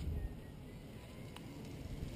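Faint low rumble of a camera being carried along on a walk outdoors, with one soft click about one and a half seconds in.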